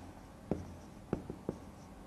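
Marker pen writing on a whiteboard: four short, sharp strokes as letters are drawn.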